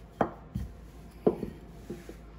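Four irregular knocks in two seconds, typical of a knife or utensil striking a wooden board during kitchen work.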